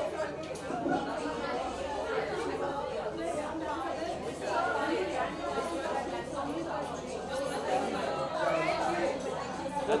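Overlapping chatter of many people talking at once, with no single voice standing out.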